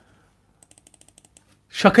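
A computer mouse scroll wheel ticking: a quick run of faint, evenly spaced clicks lasting under a second, followed near the end by a man starting to speak.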